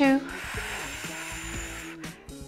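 A woman's long, breathy exhale lasting about a second and a half, on the effort of a Pilates ring press, over soft background music.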